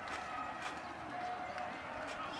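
Steady stadium ambience of a televised college football game during a running play: low crowd and field noise with faint distant voices.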